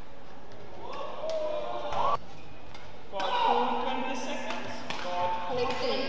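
Badminton rally: sharp racket strikes on the shuttlecock and shoe squeaks on the court, with a louder hit about two seconds in. After a sudden brief drop in sound, voices fill the arena from about three seconds in.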